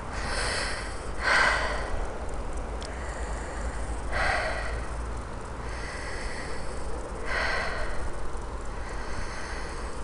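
A person breathing out heavily close to the microphone, four long breaths a few seconds apart, over a steady low rumble.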